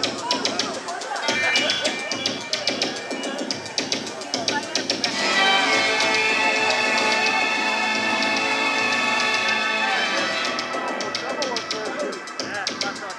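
Synthesizer music played live through a club PA, heard from within the crowd. For the first five seconds there are sharp rhythmic clicks and crowd voices. Then a sustained many-note synth chord swells up, holds for about five seconds and falls away, and the clicks and voices return.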